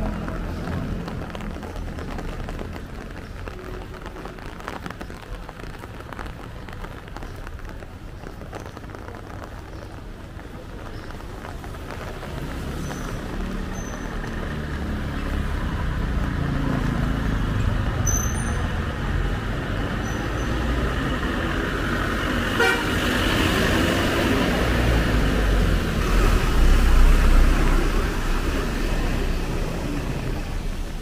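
Street traffic on a wet road: motor scooter and bus engines approaching and passing, growing louder through the second half, with a vehicle horn tooting.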